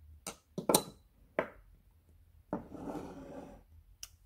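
A perfume bottle and its cap being handled: three sharp clicks in the first second and a half, the loudest just under a second in, then a rubbing scrape lasting about a second.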